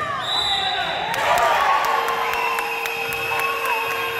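Sneakers squeaking on a hardwood sports-hall floor during a basketball game, with a ball bouncing and voices echoing through the hall.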